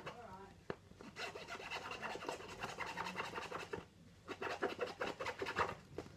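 Plastic packet crinkling and rustling as it is handled in the hands, in two stretches with a short lull a little past the middle.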